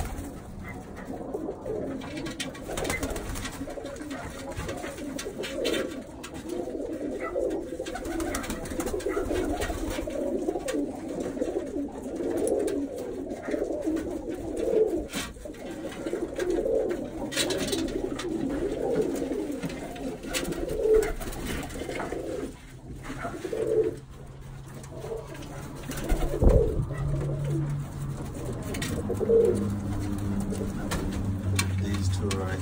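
Birmingham roller pigeons cooing in a loft, many overlapping coos at once, continuously, with a low bump near the end.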